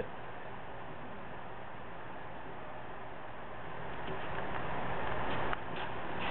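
Datco hot-melt roll coater running, its motor-driven glue roll and belt-driven top roll turning with a steady even noise that grows a little louder past the middle, with a faint click or two near the end.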